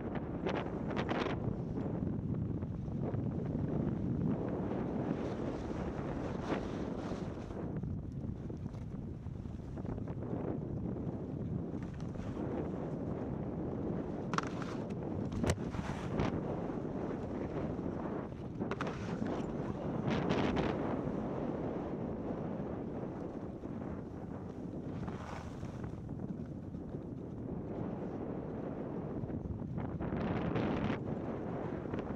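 Wind rushing over a 360 camera's microphone as a skier glides downhill, with the hiss of skis sliding on packed snow, swelling and easing with each turn. A few brief sharp clicks are heard about halfway through.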